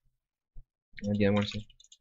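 Computer keyboard keys clicking a few times as code is typed.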